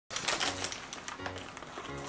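Crinkling and crackling of single-serve Cheetos Puffs snack bags being handled and opened, densest in the first second and then thinning out.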